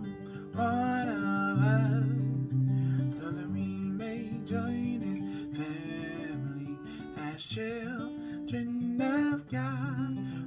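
A man singing a slow worship song with wavering, held notes over a strummed acoustic guitar.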